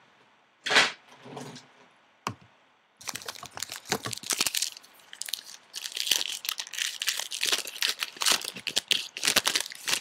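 A trading-card pack's wrapper being torn open and crinkled by hand. A brief loud rustle comes just under a second in, then from about three seconds on a continuous crackling, tearing rustle runs to the end.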